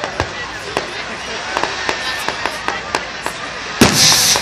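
Fireworks going off: a quick, irregular run of sharp pops and crackles, then a much louder bang near the end.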